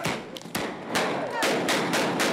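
An uneven run of sharp knocks or bangs, about six in two seconds, with a haze of background noise between them.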